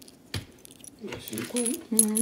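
Small plastic bingo chips clicking and clinking as they are handled and set down on bingo cards, with one sharp click about a third of a second in.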